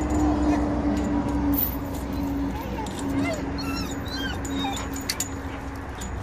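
Dog whining and whimpering in short, high-pitched, rising and falling cries, strongest in the second half: an excited greeting for a familiar person not seen in a long time.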